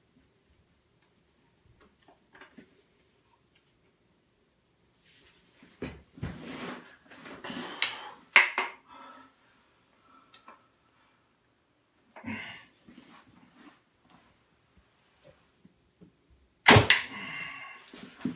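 Long-powerstroke Chinese-style crossbow with a 95 lb carbon-laminate Korean bow as its prod, spanned by hand with scuffing handling noises and a sharp click about eight seconds in, then shot near the end: one loud sharp snap as the string is loosed, with a brief rattle after it.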